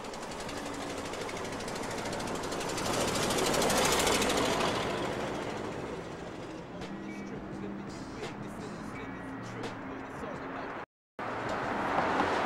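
A vehicle passing by, its noise swelling to a peak about four seconds in and then fading. The sound cuts out suddenly for a moment near the end.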